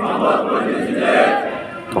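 A large body of recruits repeating a line of their oath together, many male voices blending into one loud crowd shout that dies away near the end.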